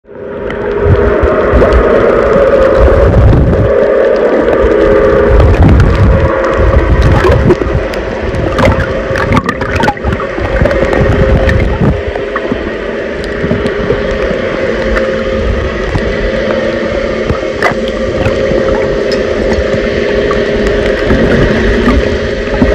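Underwater sound picked up by a submerged iPhone microphone: muffled rushing and gurgling water with heavy low rumbles, scattered sharp clicks and a steady low hum underneath. It fades in at the very start.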